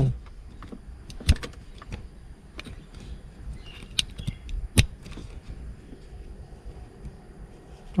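Plastic clicks and rustling of a USB charging cable being pulled from one car USB port and plugged into the other, with a phone being handled. There are a few sharp clicks, the loudest about a second in and near the five-second mark.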